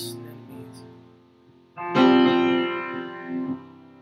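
Guitar playing a song's introduction: soft sustained notes, then a full chord struck about two seconds in that rings and fades.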